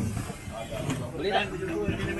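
Men's voices talking in the background, over a low steady hum.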